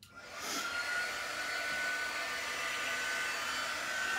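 Handheld craft heat tool switched on and blowing, drying freshly applied chalk paste. It spins up over about a second, then runs steadily with a faint high whine.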